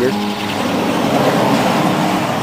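Small homemade wind turbine freewheeling in gusty wind, with no battery load: its carved wooden propeller spins fast with a steady whir amid wind noise.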